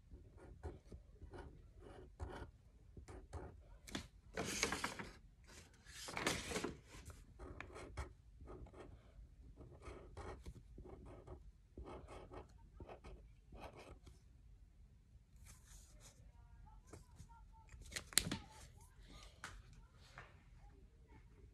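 Felt-tip marker drawing on paper: faint, short scratchy strokes in quick succession, with two longer, louder strokes about four and six seconds in and a sharp click near the end.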